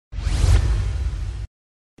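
Whoosh sound effect over heavy bass, part of an animated logo intro sting. It lasts about a second and a half and cuts off suddenly.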